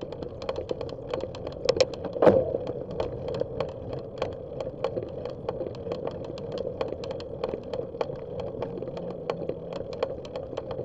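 Bicycle ridden on a rough paved road, heard from the bike-mounted camera: quick, irregular clicks and rattles over a steady hum, with one louder knock about two seconds in.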